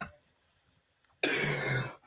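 Someone clearing their throat once, about a second in: a short, rough sound lasting well under a second.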